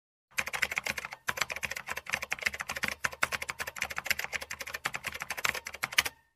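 Computer keyboard typing sound effect: rapid keystroke clicks, with brief breaks about a second in and about three seconds in.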